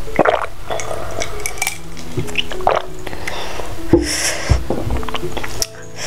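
Gulps and swallows of a drink taken from a glass mug, and the glass clinking as it is set down on the table, over background music that cuts off shortly before the end.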